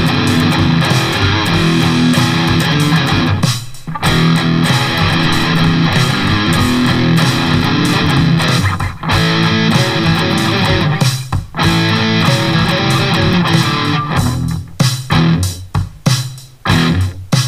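Electric guitar, a Charvel So Cal tuned to drop D, played through an Eleven Rack amp modeller with a high-gain distorted lead-rhythm tone, riffing with short breaks between phrases that grow choppier near the end.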